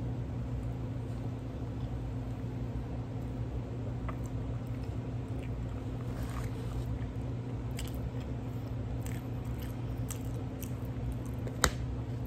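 Air fryer running with a steady low hum, under close chewing and the squish of a sloppy cheeseburger being handled and bitten, with scattered small clicks and one sharp click near the end.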